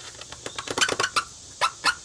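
A paper towel scrubbing against an RV's exterior wall in a run of quick, scratchy rubbing strokes, the two loudest near the end, cleaning off residue where the old grab handle was mounted.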